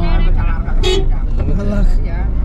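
A person talking over the steady low rumble of a car driving along a paved highway.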